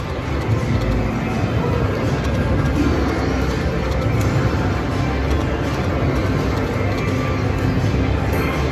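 Music and sound effects from a Konami video slot machine as its reels are spun several times in a row, over a busy wash of casino background noise.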